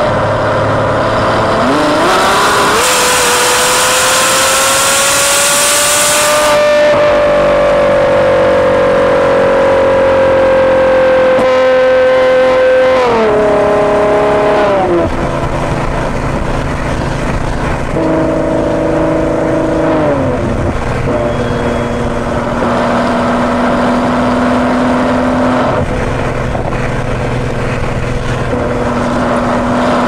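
Ferrari GTC4Lusso's V12 running through a Capristo aftermarket exhaust, heard from outside the moving car. About two seconds in it revs up sharply and holds under a loud rush of wind noise, then the note sags and falls in steps around the middle and again later, settling to a steadier, lower cruising note.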